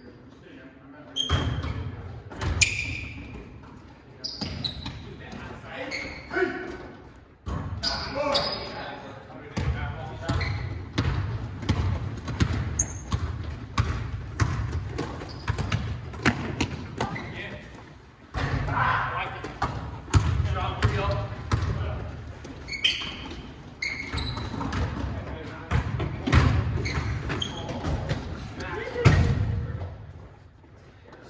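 A basketball being dribbled and bouncing on a hardwood gym floor, many sharp bounces throughout, echoing in the large hall, with players calling out to each other.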